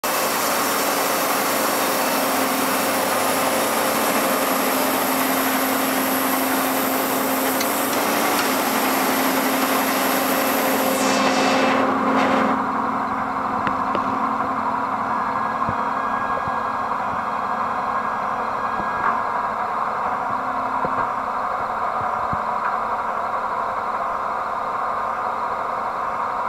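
WMW UPW 63 two-roll thread rolling machine running with a steady mechanical hum and a high hiss. The hiss and part of the hum cut off about twelve seconds in, leaving a quieter steady hum with a few faint clicks.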